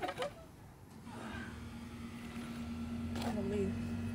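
A steady low engine hum sets in about a second in and slowly grows louder. Short bits of voice come at the start and near the end.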